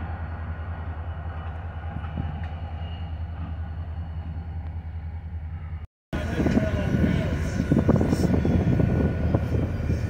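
Diesel locomotives idling in a rail yard: a steady low engine hum with an even pulse. About six seconds in the sound drops out briefly where the recording was paused, and when it returns the rumble is louder and rougher.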